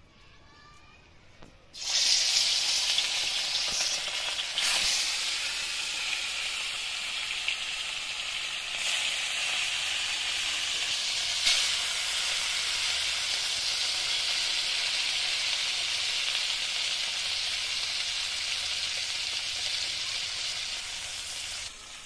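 Bata fish pieces, rubbed with salt and turmeric, frying in hot mustard oil in a wok: a loud sizzle starts suddenly about two seconds in as the fish go into the oil and runs on steadily, flaring briefly twice as more pieces hit the oil.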